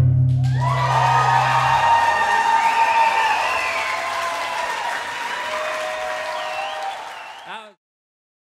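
The last chord of an electric guitar and string quartet rings out for about two seconds, then an audience applauds and cheers. The applause and cheering fade out just before the end.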